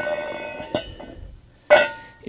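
A hollow steel square-tube trailer tongue section clanking as it is handled, and ringing with a few clear metallic tones that die away. A small tap comes near the middle, and a second clank with the same ring comes near the end.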